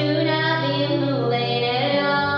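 A woman singing a folk song with long held notes, one bending in pitch about a second in, over her own acoustic guitar.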